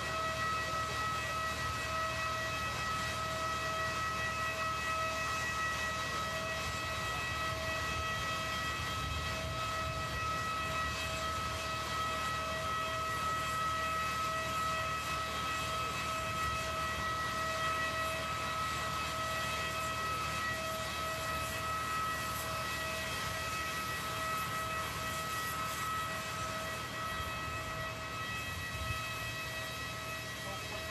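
Steady, high-pitched whine with evenly spaced overtones over a low rumble, from a parked jet airliner close by, holding the same pitch and level throughout.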